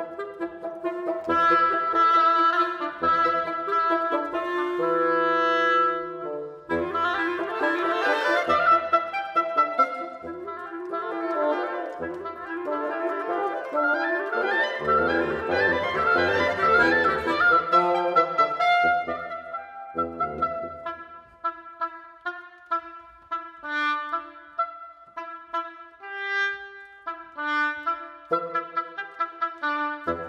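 Reed trio of oboe, clarinet and bassoon playing contemporary chamber music: a dense, loud passage with all three lines overlapping in the middle, thinning to short, separated notes in the last third.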